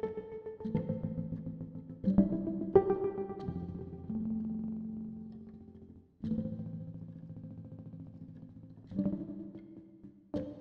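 Granular texture from a Mutable Instruments Beads module processing a Morphagene sample: pitched, plucked-sounding tones made of many small grains. New notes enter at about the start, around two and three seconds in, near six seconds and near nine seconds, and each one fades away in turn.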